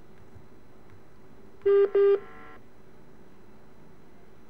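Two short electronic telephone beeps in quick succession on the phone-in line, followed by a brief fainter tone, over steady line hiss.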